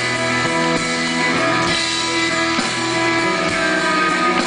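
Live rock band playing an instrumental passage: a picked electric guitar leads over bass, with no vocals.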